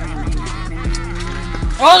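Background music with a steady beat. Near the end comes a loud, drawn-out exclaimed "Oh" from a young woman, its pitch swooping up and down.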